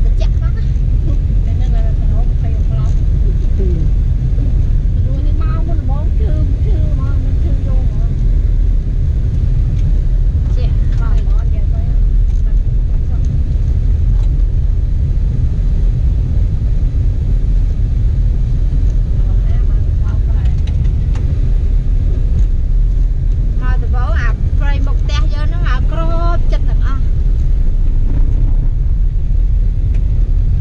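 Steady low rumble of a car driving on an unpaved dirt road, heard from inside the cabin. Faint voices come and go over it, clearest near the end.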